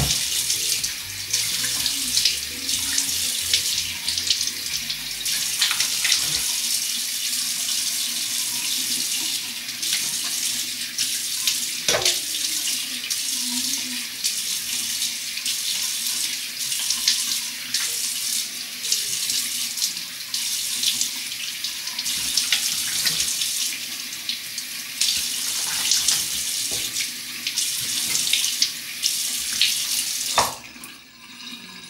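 Bathroom sink tap running in a steady stream while hands splash water up onto a face, with irregular splashes throughout. One sharp click sounds about twelve seconds in.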